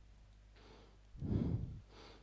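A person sighing out a breath close to the microphone, once, a little over a second in, with a softer breath before it.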